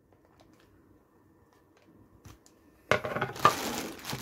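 Faint handling clicks, then, about three seconds in, clear plastic packaging wrap loudly crinkling as it is grabbed.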